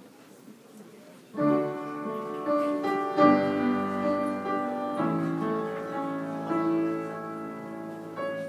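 Piano chords that begin about a second and a half in after a quiet start, each new chord struck sharply and then held, at the opening of a chorale that a choir is about to sing.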